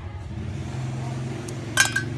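Oil-soaked motorcycle clutch plates clinking against each other and the steel pot as they are lifted out of the oil, with one sharp ringing metallic clink near the end over a low steady hum.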